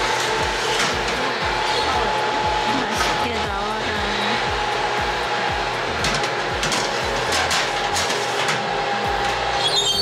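A convection oven's fan running steadily with a hum, while metal madeleine trays are slid onto the oven racks with scattered light clicks and scrapes.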